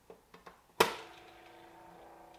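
The plastic lid of a SANS countertop reverse osmosis water purifier shuts with a sharp click after a few light taps; right after it, the unit's pump kicks in with a steady hum as it starts cycling water through the filters.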